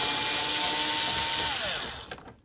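Bosch cordless screwdriver running with a steady motor whine as it backs a screw out of the scooter's plastic front cover, then winding down, the whine falling in pitch as it stops about three-quarters of the way through.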